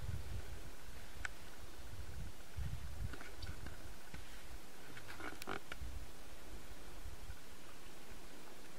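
Low, irregular rumbling of wind on the microphone over faint outdoor background, with a few faint clicks about a second in and around five seconds in.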